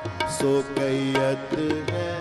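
Sikh kirtan accompaniment: harmoniums sounding steady held chords while a tabla plays a run of sharp strokes, with no clear singing at this point.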